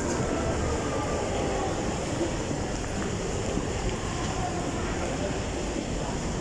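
Steady background din of a busy shopping-mall concourse: an even low noise with no distinct events, with faint voices in it.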